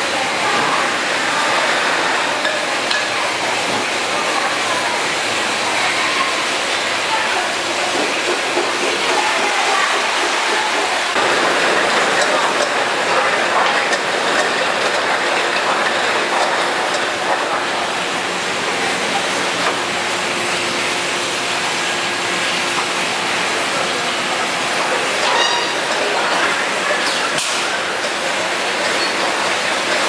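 Steady clatter of an automatic edible-oil bottle filling line running, with plastic bottle caps rattling along a cap elevator into the sorting hopper. The din gets a little louder about a third of the way through.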